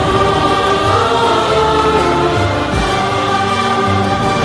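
Karaoke backing track of a Hindi film ballad: orchestral music with sustained choir-like voices over bass, playing steadily.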